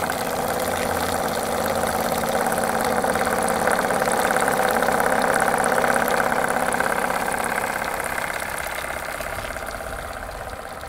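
Small vertical steam engine of a gas-fired model steam launch running fast, a rapid even beat of exhaust puffs. It grows louder toward the middle and eases off near the end.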